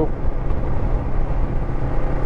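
Honda NX500 motorcycle at a steady road speed, heard from the rider's seat: its parallel-twin engine running evenly under wind and road noise.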